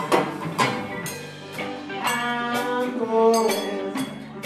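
A live band playing, with electric bass, drum kit and guitar, and a held, bending lead melody line over the top.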